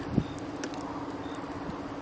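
Wood campfire crackling with scattered small pops over a steady low hum. A short thump just after the start is the loudest sound.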